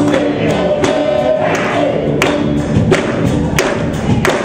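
Live soul band playing, with a group of male voices singing held notes in harmony over a drum beat.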